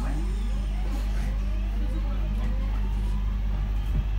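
Electric train's traction motors heard from inside the carriage, whining in several tones that rise in pitch as the train accelerates, over a steady low hum.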